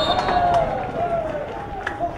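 A man's voice calling out in long, slowly falling notes, with a sharp click near the end.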